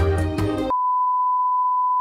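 Background music with a steady beat cuts off abruptly less than a second in. It is replaced by a steady single-pitch test-tone beep, the tone that goes with television colour bars.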